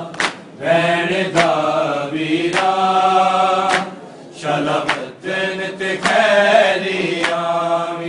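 A group of men chanting a Punjabi noha in unison, with a sharp slap about every 1.2 seconds: matam, hands striking chests in time with the chant.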